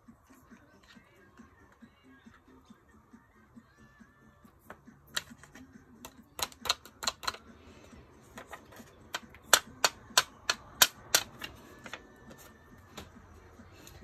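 Sharp flicks and taps on a piece of cardstock, knocking the loose embossing powder off a stamped greeting. They come as two clusters of quick clicks in the second half.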